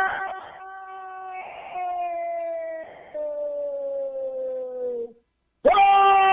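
Radio football commentator's drawn-out goal cry, "Gooool": one long held note that fades and slowly falls in pitch, breaking off about five seconds in. A second loud held shout starts just before the end.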